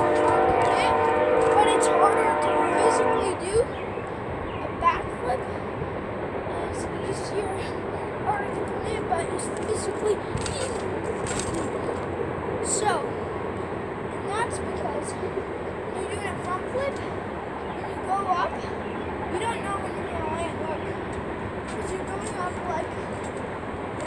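A horn sounds one steady multi-note chord for about the first three and a half seconds. After that comes a steady background hiss with scattered faint chirps and clicks.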